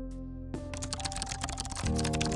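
Rapid computer-keyboard typing sound, a fast patter of key clicks starting about half a second in, over background music with sustained notes.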